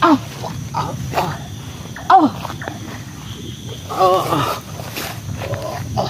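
A person's wild vocal cries. Two sharp cries fall steeply in pitch, one at the start and one about two seconds in, and a longer wavering cry follows about four seconds in.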